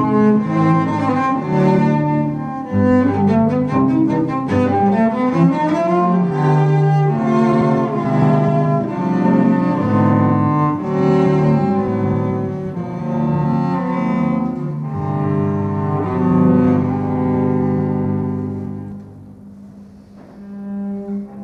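Two cellos playing a duet, bowed notes moving quickly in interwoven lines. The music turns softer near the end.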